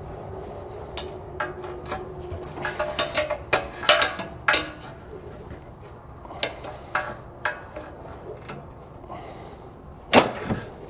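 A steel pry tool levering a metal exhaust hanger rod out of its rubber isolator: a run of metallic clicks and clanks with short squeaky scrapes, busiest from about two to five seconds in, then a few scattered clicks.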